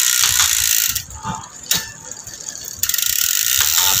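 Freehub of a bicycle's spinning rear wheel buzzing as a fast, steady ratchet clicking. It stops about a second in for nearly two seconds, with one sharp click in the pause, then starts again.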